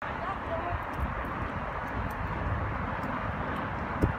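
Steady outdoor background of traffic noise from a freeway, with faint voices of people in the background.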